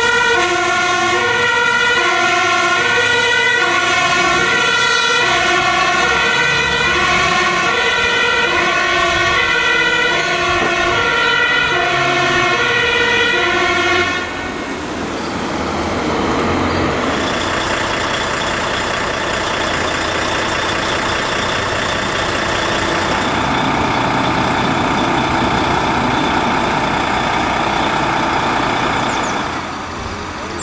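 Fire truck two-tone siren, high and low notes alternating, each held roughly half a second. About halfway through it stops abruptly and gives way to a steady rushing noise for the rest.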